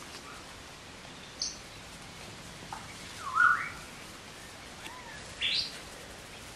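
Puppies giving short, high-pitched yips and squeals while play-fighting: four brief calls, the loudest a rising squeal about three and a half seconds in.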